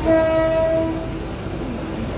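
An electric local train's horn sounds once, a steady pitched blast lasting about a second, over the train's continuous running rumble.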